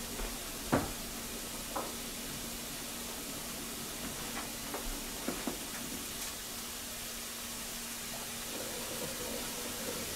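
Tomato and onion sauce sizzling quietly in a stainless steel frying pan, with a few scattered sharp pops, the loudest about a second in.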